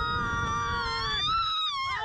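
Two riders screaming in long, held screams at two pitches, one high and one lower, on a Slingshot reverse-bungee ride. The higher scream rises a little and then falls away near the end.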